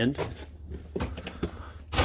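A man's voice trails off, then a quiet pause of room tone with a low steady hum and a couple of faint soft knocks about a second in.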